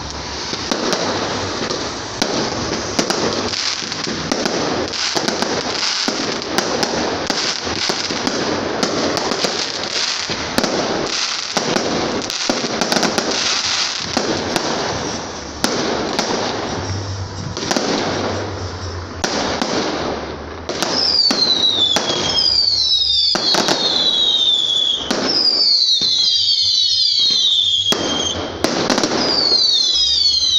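Fireworks display: dense bangs and crackling, then from about twenty seconds in a run of falling whistles, one every second or so, among further bangs.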